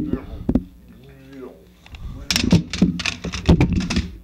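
A person making mouth and voice noises that imitate chomping and munching: a few short ones at the start, then a quick run of them from a little over two seconds in.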